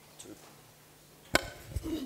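Handheld microphone being handled as it changes hands: one sharp thump about a second and a half in, then faint rubbing and handling noise.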